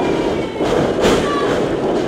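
Wrestling ring rumbling under a wrestler's running footsteps, with thuds from the ring's boards as he charges his opponent into the corner.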